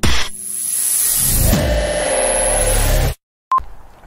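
Cinematic intro sound effect: a sudden loud hit, then a swelling, building rush with a thin high whine over it, cut off abruptly after about three seconds. A short beep follows half a second later.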